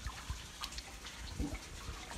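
A hand sloshing through shallow pond water to grab a goldfish, with a few small splashes.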